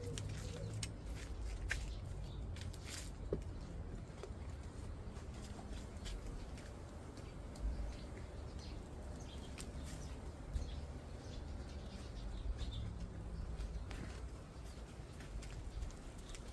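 Steady low hum of honeybees around an open hive, with scattered light clicks and knocks of wooden hive frames being handled, most of them in the first few seconds.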